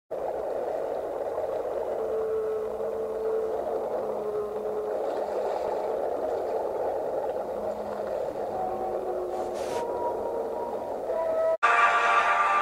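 Recorded whale song: a few long, drawn-out calls with slow pitch glides over a steady rushing underwater noise. It cuts off suddenly near the end.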